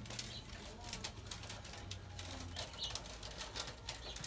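Faint, irregular clicking and rustling of carrizo (river cane) strips being threaded and pulled through a woven basket.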